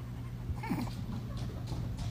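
A pet's brief, faint call about half a second to a second in, over a steady low hum.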